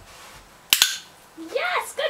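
A dog-training clicker clicked once, a sharp double click of press and release, marking the moment the dog lies down on the mat. A woman's voice begins praising the dog near the end.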